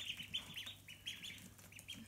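Several ducklings peeping, a quick string of short high peeps that overlap and keep coming several times a second.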